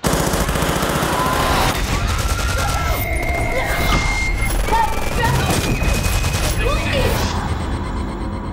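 Rapid gunfire in a crowded room, many shots in quick succession, with people screaming. It starts abruptly and thins out about seven seconds in.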